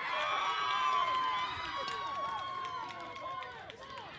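Several voices of players and spectators calling out and chattering over one another, with one long held shout running through most of it.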